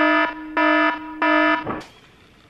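Electronic alarm beeping: three buzzy beeps of one low pitch, about one every 0.6 s, then it stops.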